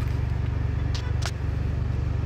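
A steady low mechanical rumble with a fast, even pulse, broken by two short clicks about a second in.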